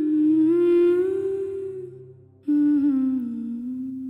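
A wordless hummed vocal in the background music, slow and sustained, in two long held phrases. The first fades out about two seconds in, and the second begins half a second later.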